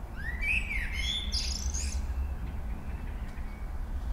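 A songbird singing a short phrase of chirps and sweeping whistles in the first two seconds, over a low steady hum.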